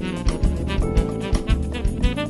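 Instrumental Brazilian samba-jazz: a saxophone plays a melody over a rhythm section of bass and drums, with regular drum strikes.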